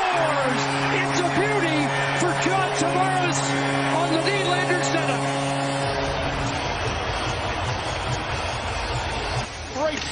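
Hockey arena goal horn sounding a steady low chord for about six seconds over a cheering crowd, signalling a home-team goal; after the horn cuts off the crowd cheering carries on.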